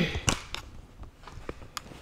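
Handling noise from a handheld camera being moved around: a few soft, scattered clicks and knocks over a quiet room, with a short breathy sound at the very start.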